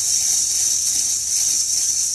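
Freshly roasted coffee beans stirred by hand in a stainless steel colander: a loud, steady rattle of beans against the perforated metal as they are tossed to cool and stop roasting.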